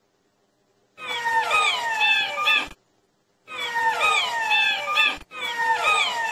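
Jackal howling: three calls in a row, each under two seconds, with a wavering pitch that slides up and down.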